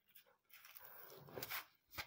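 A faint intake of breath lasting about a second; otherwise near silence.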